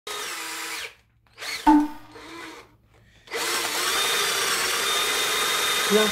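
Cordless drill running in three bursts: two short ones, then a steady run of about three seconds.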